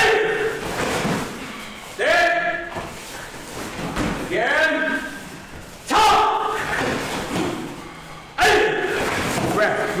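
Karate students shouting a kiai with each drilled jab, five sharp shouts about two seconds apart. Each one starts with a sudden thump and rings briefly in the hall.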